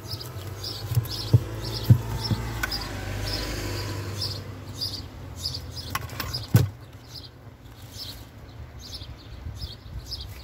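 Books being handled and shifted on a wooden shelf, giving a few light knocks, most of them in the first couple of seconds and one more past the middle. A bird chirps repeatedly in the background, about twice a second.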